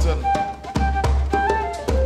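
Acoustic afro-funk band playing live. Hand drums and percussion beat a steady rhythm over a low drum pulse, under held melody notes.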